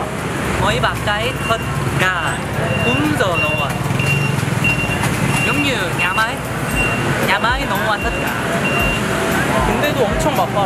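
Street traffic with motorbike engines running, under talk. Through the middle there is a steady run of short high beeps, about two a second.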